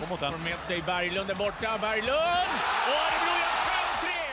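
Hockey broadcast play-by-play commentator calling the play. His voice rises into an excited shout about halfway through as a goal is scored, and the arena crowd cheers loudly under it.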